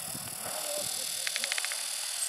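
Steady high outdoor hiss, with a short, rapid run of chirps a little past the middle.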